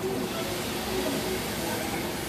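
Tunnel car wash machinery running: the cloth wraparound brushes spinning and water spraying against the car, a steady hiss over a machine hum.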